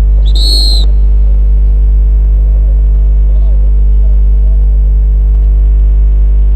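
A referee's whistle gives one short, high blast about half a second in, over a loud, steady low electrical hum.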